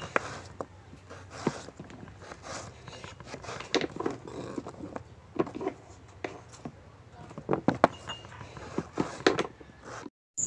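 Kitchen knife cutting raw potato on a cutting board: irregular taps and knocks of the blade through the potato onto the board.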